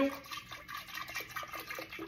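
Almond milk poured from a carton into a glass mason jar, a faint steady pouring with small irregular splashes.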